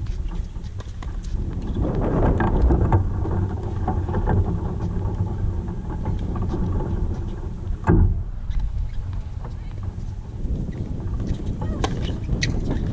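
Wind buffeting an outdoor camera microphone, with the short pops of a tennis ball bounced on a hard court before a serve and one loud thump about eight seconds in.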